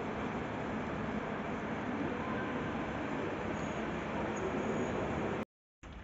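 Steady, even rush of indoor room noise with no distinct events, which cuts off abruptly near the end.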